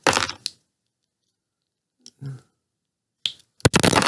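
A small plastic Happy Meal Barbie body being pried apart with a thin metal blade. There are scraping clicks at the start, then a few sharp clicks near the end as the plastic halves come apart.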